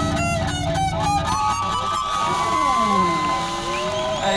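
A live rock band's last rapid strums and drum hits cut off about a second in, leaving electric guitar feedback and pitch-bent guitar noise: long whining tones that slide and bend up and down in pitch, several at once.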